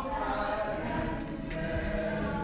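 Voices and singing from the stage, heard from the wings, with held sung notes. There are a couple of light knocks.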